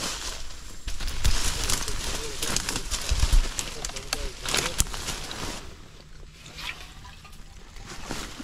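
Leaves and twigs rustling and crackling as someone pushes through dense brush, with dull low thumps mixed in. It quiets down after about five and a half seconds.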